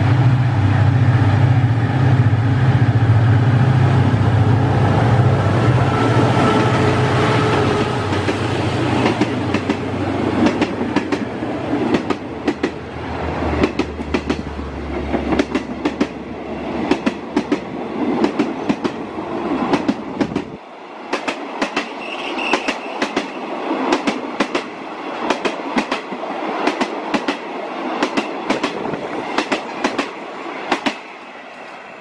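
A State Railway of Thailand passenger train passes close by. First comes a loud, steady drone from the diesel locomotive's engine as it approaches. From about halfway on, the coaches go by with rapid, regular clickety-clack from their wheels over the rail joints.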